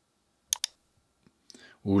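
Two quick, sharp clicks about a tenth of a second apart, a double click on the computer as strokes of a drawing are erased with a whiteboard app's smart eraser.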